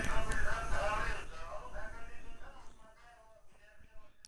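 A radio playing in another room, its voice or singing picked up faintly through a sensitive condenser microphone, fading away about three seconds in.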